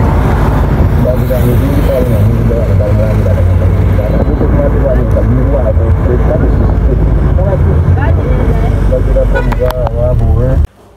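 Road traffic on a busy main road with wind rumbling on the microphone, and indistinct voices of people nearby.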